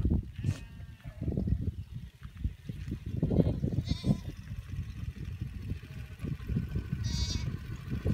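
Cashmere goats and sheep bleating in a large grazing herd, several separate calls over a continuous low rumble.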